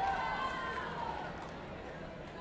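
A single drawn-out shouted call, loudest at the start and dying away after about a second, over the steady chatter of a crowd in a sports hall.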